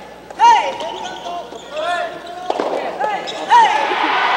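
Athletic shoes squeaking on an indoor court floor: about six short, high, arching squeaks, with a sharp knock about two and a half seconds in.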